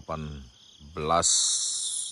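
High-pitched insect trilling in trees, faint at first, then suddenly much louder a little over a second in.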